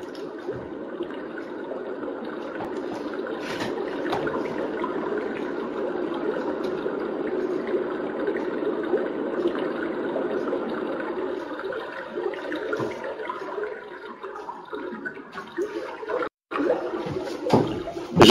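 Steady rush of running water from a stream or waterfall, played back from a video. It weakens and breaks up in the last few seconds, with a brief cut-out shortly before the end.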